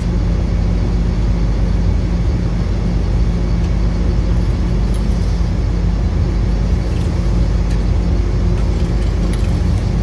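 A steady, loud, low mechanical drone of running machinery, engine-like, holding an even pitch throughout, with a few faint clicks.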